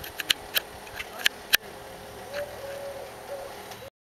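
Four sharp clicks in the first second and a half over faint outdoor background, with a faint wavering tone in the second half; the sound cuts off just before the end.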